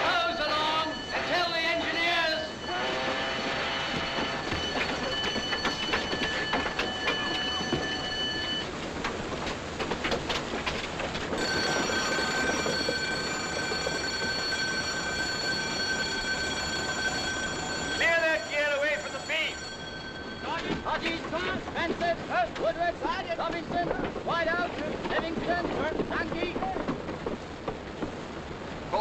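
A ship's alarm sounding a steady shrill tone in two long spells, the second starting about eleven seconds in, over a continuous rushing noise, with men's voices shouting at the start and again near the end.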